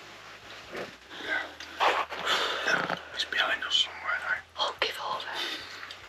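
Speech: a woman talking softly, close to the microphone, over a faint steady low hum.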